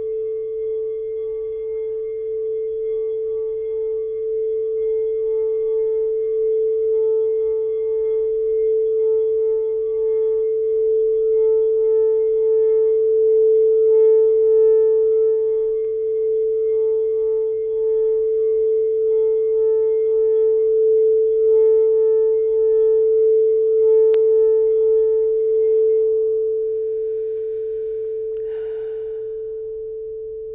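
Frosted crystal singing bowl sung by circling a mallet around its rim: one steady, slightly wavering tone that swells in the middle, then rings on and fades once the mallet stops near the end.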